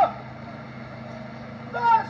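A man's loud, high-pitched chanted funeral lament (Albanian vajtim). One phrase breaks off at the start, there is a pause over a low steady hum, and a new phrase begins near the end.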